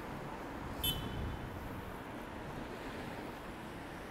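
Steady background noise of city street traffic, cars passing with a low rumble. A brief high-pitched chirp comes about a second in.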